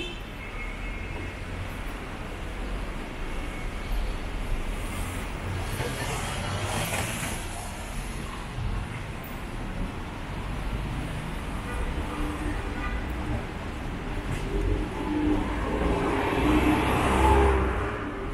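Street traffic: a steady rumble of cars on the road, with one car passing about six seconds in and a louder pass near the end.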